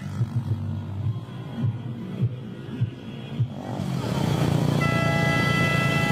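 A large convoy of motorcycles running together, with music in the first half. About four seconds in, the sound gets louder and steadier, and a vehicle horn with several tones is held from about five seconds in.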